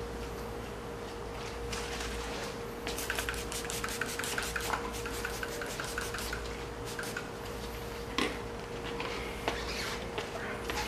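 A trigger spray bottle of IPA (isopropyl alcohol) panel-wipe solution being pumped rapidly, a quick even run of spritzes over about three and a half seconds, with a single sharper knock later on. A steady hum sits underneath.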